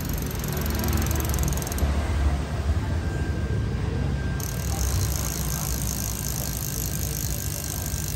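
A bicycle's toothed rubber belt drive and rear wheel spinning as the pedal crank is turned by hand: a low, steady whir without distinct clicks.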